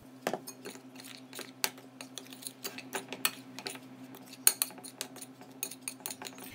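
A metal spoon stirring dry cornmeal and flour in a glass bowl, clinking and tapping irregularly against the glass over a faint steady hum.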